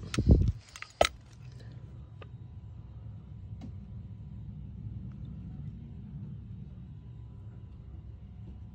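A thump and a few sharp metallic clinks in the first second, the sharpest about a second in, as an aluminium motorcycle crankcase half is handled; after that, a steady low rumble.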